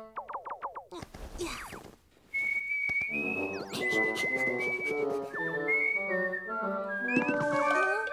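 Cartoon sound effects: a quick run of short falling pitch glides and a sweep, then a brief hush. After that, light background music comes in with a high whistle-like melody over accompaniment.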